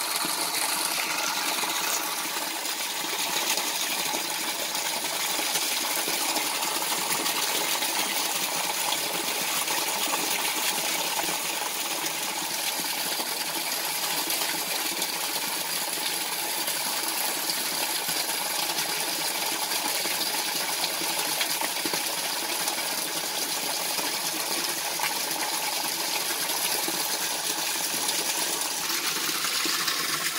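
A steady jet of clean water from a pump-fed hose splashing down into a tank of standing water, refilling a fish tank after a water change.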